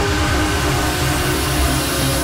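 Electronic trance music at a build-up: a loud white-noise sweep rising in pitch and filling the top end, over pulsing bass notes and sustained synth chords.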